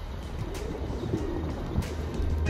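Feral pigeons cooing, with background music under it.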